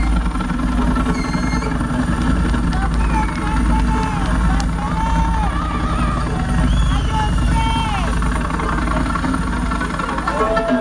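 Live concert crowd shouting and whooping over a steady, deep low drone from the sound system between songs.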